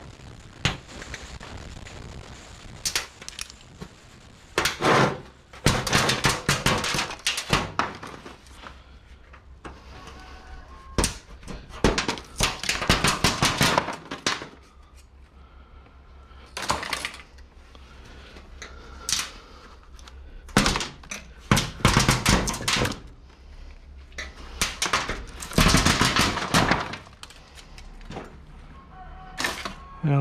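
LED backlight strips and thin metal and plastic parts of a flatscreen TV being pried off and handled by hand: irregular bursts of rapid clicks, clatter and rattling separated by short pauses. A low steady hum runs underneath.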